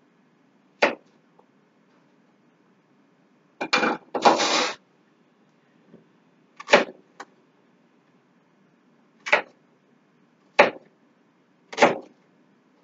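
Knife slicing through a zucchini onto a cutting board, a sharp chop every second or two. A longer, noisier cutting or scraping sound comes about four seconds in.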